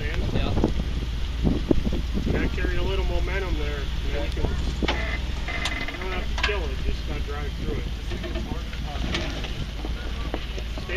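Four-door Jeep Wrangler JK's engine running low and steady as it crawls slowly over a rock ledge.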